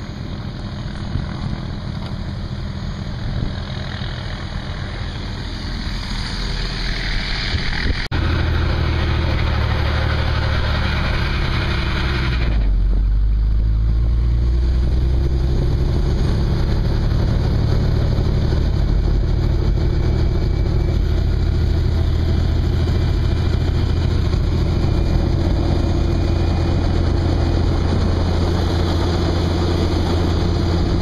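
Helicopter engine and rotor running steadily, heard from inside the doors-off cabin. The sound jumps suddenly louder and fuller about eight seconds in and stays steady from then on.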